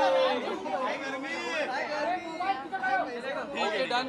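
Several people talking over one another: overlapping chatter of voices with no single clear speaker.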